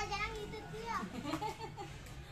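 Young children talking and chattering in high voices, with no clear words.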